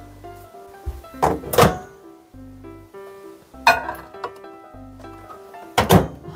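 A microwave oven door being handled, with a few thunks and clunks and the loudest clunk near the end as it is shut, over light background music.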